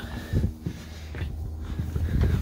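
Footsteps and handling bumps as the camera is carried, over a steady low hum.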